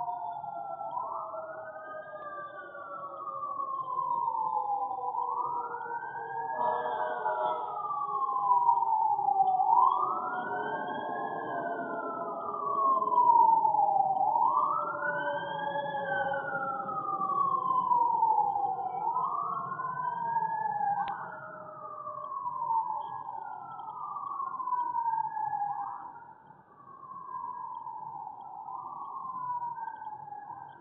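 Emergency vehicle siren wailing, its pitch rising and falling slowly about every four and a half seconds. A second, lower tone glides slowly downward over the first ten seconds or so.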